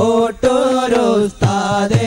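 A voice singing an Islamic devotional song in praise of the Prophet, in long held, ornamented notes with brief breaks between phrases, and a few percussive strokes underneath.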